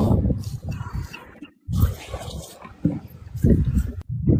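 A man grunting and groaning in short, rough, low bursts.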